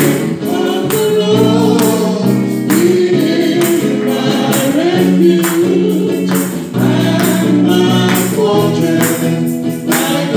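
Live gospel worship song: a woman singing into a microphone over electric guitar, with a steady beat.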